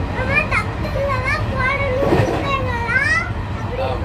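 A young child talking in a high, lively voice over the steady low rumble of a moving train carriage.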